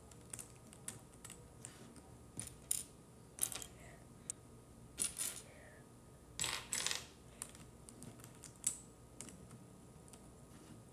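Small plastic pieces of a 4x4 puzzle cube clicking and clattering as they are pressed into the slots of the cube's core, in irregular light clicks with a louder cluster of rattles a little past the middle.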